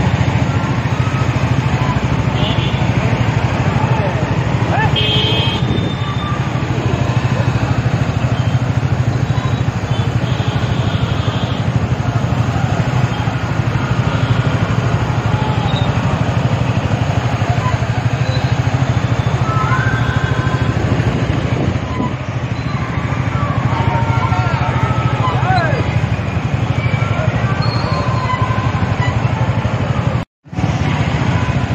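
Several motorcycles riding together in a column, their engines and road noise blending with wind buffeting the phone's microphone into a steady loud rumble. Faint voices and a few brief higher tones come through over it, mostly in the second half.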